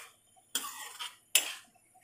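Metal spoon stirring peas into thick gravy in a kadai, scraping the pan in two quick strokes about a second apart, with another starting as it ends.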